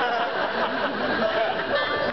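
A banjo being tuned on stage: strings plucked while a tuning peg is turned, with one note held briefly about a second in.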